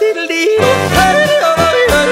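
Alpine folk music with a singer yodeling, the voice flipping abruptly between low and high notes over a steady bass and oom-pah beat.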